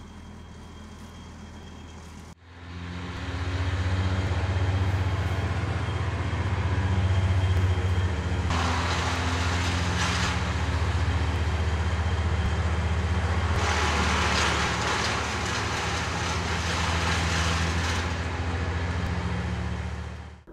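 Wood chipper running with a steady, heavy engine drone. About two seconds in it dips briefly and then swells louder. Two longer stretches of harsher, rasping noise ride on top, about eight to ten seconds in and again from about fourteen to eighteen seconds.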